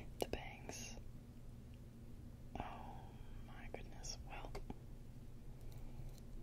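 Soft whispering close to the microphone in short unvoiced phrases, with a few light clicks just after the start.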